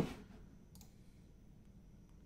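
Computer mouse clicking, faint: a sharp click right at the start and another just under a second in.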